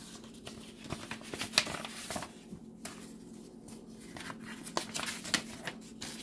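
Paper envelope being opened and a folded letter pulled out and unfolded: irregular rustling and crinkling of paper, with small clicks.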